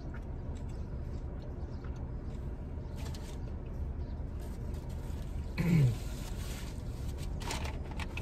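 Steady low hum inside a parked car, with a few faint clicks and handling sounds. About five and a half seconds in, a man gives one short falling 'mm'.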